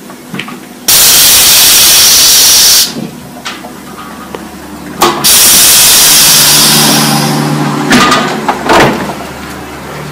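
Pressurised CO2 vented from a homebrew beer keg through its pressure relief valve: two loud hisses of about two seconds each, the second trailing off, then a couple of knocks. The keg is being de-gassed because its pressure is too high after a new gas bottle went on.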